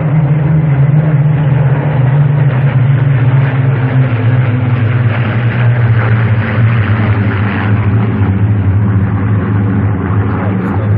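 A formation of Spitfires flying past, their V12 piston engines blending into one loud, steady drone that sinks slowly in pitch over the first few seconds.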